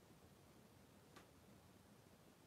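Near silence: faint room tone, with a single soft click about a second in.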